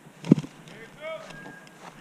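Brief human voice sounds: a short, loud call a fraction of a second in, then a softer, shorter vocal sound about a second in.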